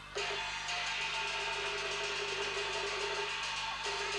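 Teochew opera instrumental accompaniment between sung lines: a rapid, even percussion roll over a held note, ending just before the singing returns.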